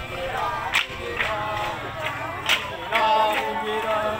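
Parade music with singing voices, cut by two loud, sharp cracks about a second and a half apart.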